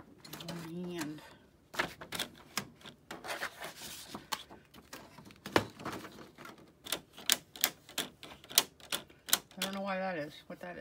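Sharp plastic clicks and knocks from a Canon PIXMA G3270 inkjet printer's rear paper tray and paper guides being handled while a sheet of paper is loaded. The clicks are uneven at first and come about three a second near the end.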